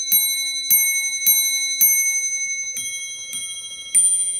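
English table clock's repeating train striking the time on its bells: single hour strikes on one bell, about two thirds of a second apart, then from about three quarters of the way in, double strikes on two bells of different pitch. The double strikes count the quarters: the repeat is sounding quarter to seven, six strikes for the hour and three doubles for the quarters.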